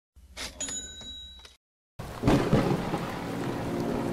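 A short ringing tone over a low hum, cut off abruptly, then after a brief silence a rain and thunder sound effect: steady rain hiss with a low rumble of thunder, starting about two seconds in.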